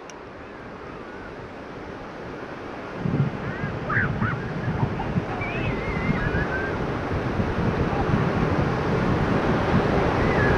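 Ocean surf rushing on a beach, with wind buffeting the microphone; the rush grows steadily louder from about three seconds in.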